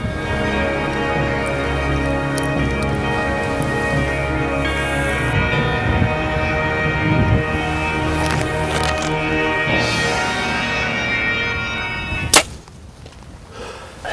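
Background music with steady sustained tones, cut off about twelve seconds in by a single sharp crack of an Elite compound bow being shot, after which it goes much quieter.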